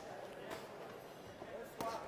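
Faint boxing-ring ambience: distant voices from around the ring and a couple of soft thuds, one right at the start and one about half a second in, as the fighters exchange punches and move on the canvas.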